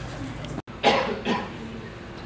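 A man coughing to clear his throat, two short coughs about a second in, just after a momentary cut-out in the sound.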